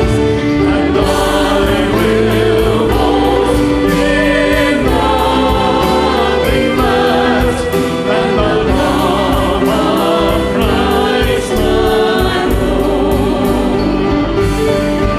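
A church praise band sings a hymn: several voices together, accompanied by piano, acoustic guitar, electric bass, violin and drums, at a steady loud level.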